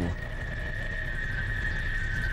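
A steady high-pitched tone held unchanging over a low rumble, the ambient bed of a narrated underwater nature soundtrack.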